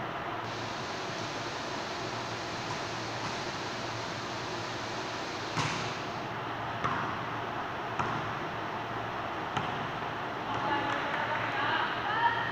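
Volleyball being struck during a rally: several sharp smacks a second or more apart, over steady background hiss, with voices near the end.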